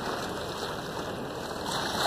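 Steady rushing wash of water along a sailboat's hull as it moves through the lake's chop.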